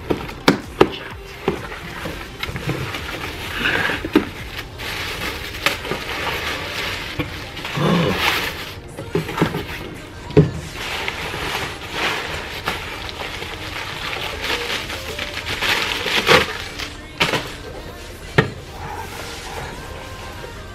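A cardboard shipping box being opened by hand, with white packing paper pulled out and crumpled: bursts of paper rustling and crackling mixed with scattered knocks and taps on the box and table.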